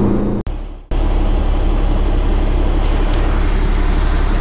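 Steady low drone of a Peterbilt 389 semi truck's diesel engine and road noise, heard from the cab. The sound cuts out briefly about half a second in, then resumes unchanged.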